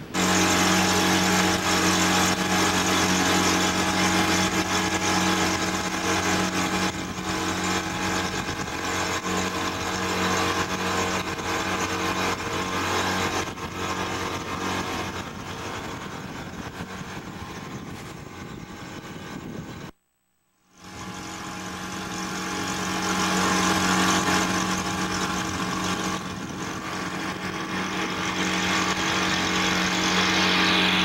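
A boat's engine running steadily with a constant hum, mixed with wind and water noise. The sound cuts out for under a second about two-thirds of the way through, then the engine hum resumes.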